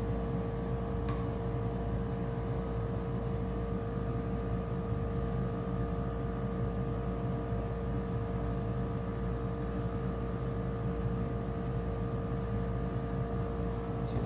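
Steady machine hum with a constant mid-pitched tone over a low drone, unchanging throughout.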